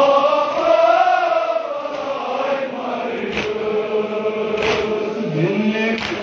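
Male voices chanting a noha, a Shia lament for Muharram, together in slow held notes that slide between pitches, with a couple of brief sharp slaps or claps.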